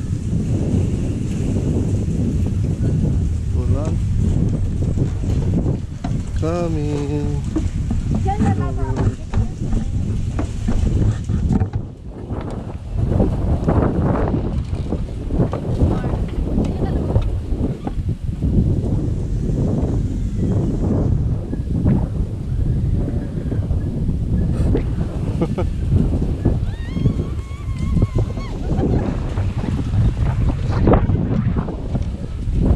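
Wind buffeting the microphone of a pole-mounted action camera, a loud, gusting low rumble that briefly eases about twelve seconds in.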